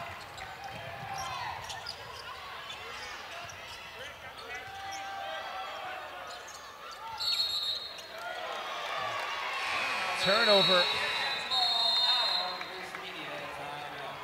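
College basketball game sound in a gym: a ball bouncing on the hardwood court and players' voices over crowd chatter. There are short, shrill, high-pitched squeals about seven seconds in and again from about ten seconds, around when play stops.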